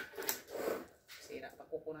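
Cardboard box being handled and prised at by hand, the lid rubbing and scraping, with a sharp click right at the start and quiet mumbling near the end.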